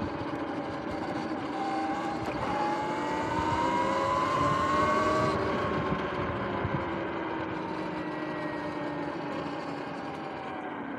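Sur-Ron X electric dirt bike's motor and drivetrain whining as it accelerates: the whine rises in pitch for a few seconds, then slowly falls as the bike slows, over wind and tyre noise.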